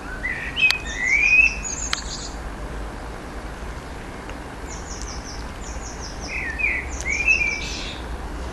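A small songbird singing two short song phrases, one just after the start and one from about five seconds in, each a few whistled slides followed by a quick run of high notes.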